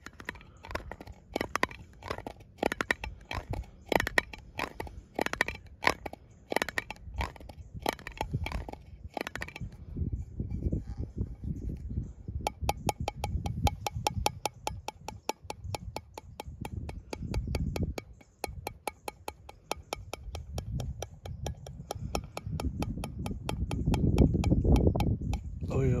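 Fingers tapping and scratching on a dip can held close to the microphone: uneven taps for the first ten seconds or so, then a fast, even run of clicks. Wind rumbles on the microphone, growing louder near the end.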